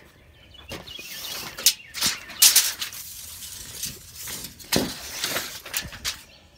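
Handling noise: irregular rustling and scuffing bursts from a handheld camera being moved about. The loudest come about two and a half seconds in and again near five seconds.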